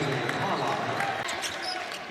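Basketball game sound in a large arena: a steady crowd din with a basketball bouncing on the hardwood court.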